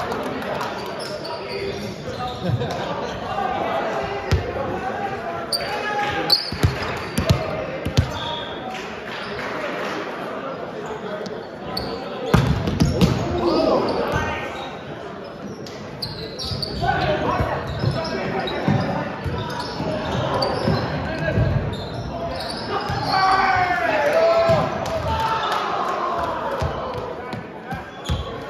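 Volleyballs being struck and bouncing on a hardwood gym floor, with sharp slaps echoing around a large gymnasium, over players' calls and chatter.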